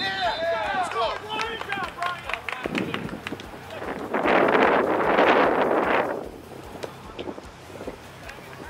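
Men shouting on an outdoor football field, several voices calling out in the first couple of seconds. About four seconds in comes a two-second rush of noise without pitch, then quieter outdoor background.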